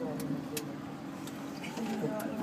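A steady low hum inside a moving cable car cabin, with faint voices of people talking and a few light clicks.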